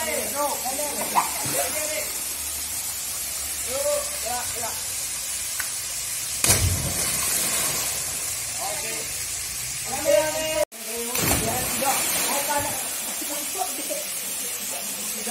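A person jumping from a rock ledge into a waterfall pool: one loud splash about six and a half seconds in, over the steady rush of falling water, with people shouting.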